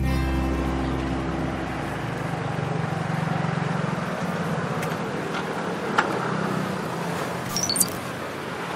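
Street traffic noise with a motor scooter riding up and stopping, under background music that fades out over the first couple of seconds. A sharp click comes about six seconds in, and a few short high chimes come near the end.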